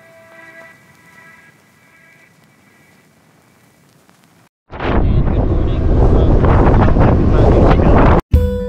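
Soft ambient music fading out, then, just past halfway, a sudden cut to loud, gusty wind buffeting the camera microphone on a moving ship's open deck.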